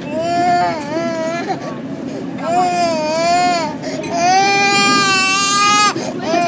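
Young child crying in three long drawn-out wails, each rising and falling in pitch, the third the longest and loudest, held until near the end.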